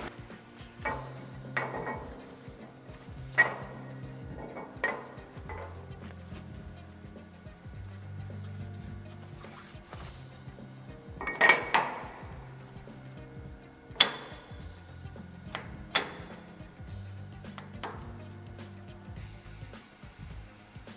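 Quiet background music with a slow bass line, over scattered sharp metallic clinks and knocks from a steel press brake tool being handled and wiped with a cloth in its clamp. The loudest knocks come as a short cluster a little past the middle, then two single sharp clinks a couple of seconds apart.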